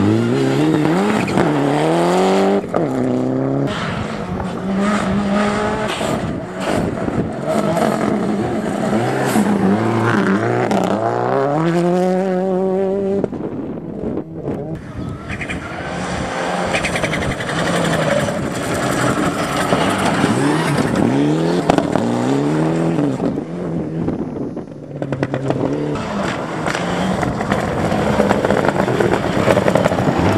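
Rally car engines revving hard at full throttle on a gravel stage, several cars in turn, each pitch climbing and dropping sharply at the gear changes.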